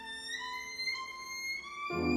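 Violin playing classical music: a high, quiet passage in which one held note slowly rises in pitch over short notes below it. Just before the end, the music comes in loud and much lower.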